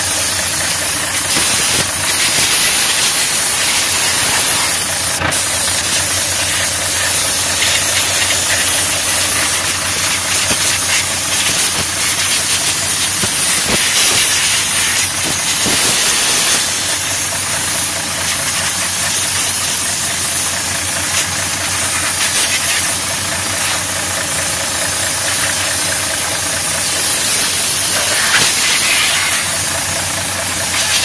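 Compressed-air blow gun hissing steadily as it blows dust out of a truck filter, fed by a coiled air hose from the truck's air system. A diesel truck engine idles underneath.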